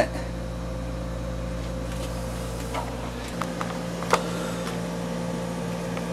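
A steady machine hum with a faint held tone. Its deepest part drops away about three seconds in, and there are a few light clicks.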